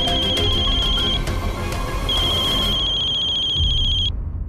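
Mobile phone ringing: a high, rapidly trilling electronic tone in two long rings with a short pause between them, over dramatic background music with strong beats.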